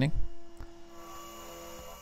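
A faint, steady electrical-sounding hum with a few thin steady tones, after a voice trails off at the very start.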